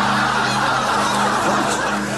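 Studio audience laughing, a dense, steady wash of many voices that eases off near the end.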